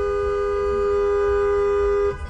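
Car horn held down: a steady two-note chord at constant pitch, cutting off right at the end.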